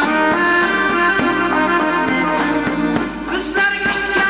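Live Uzbek folk music: an instrumental passage with a strummed dutor (long-necked lute) under held melody notes, in a steady rhythm. The voice comes back in near the end.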